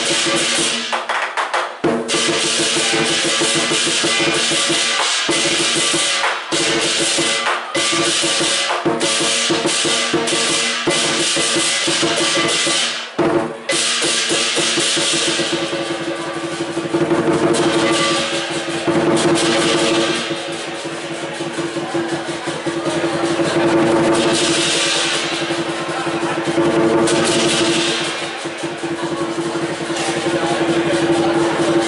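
Lion dance percussion: a large Chinese drum beaten together with clashing hand cymbals, playing loudly and continuously. It breaks off briefly about a second and a half in and again around 13 seconds, then settles into a steadier ringing clash.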